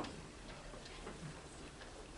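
Quiet hall ambience with a few faint scattered clicks, one slightly sharper click at the very start.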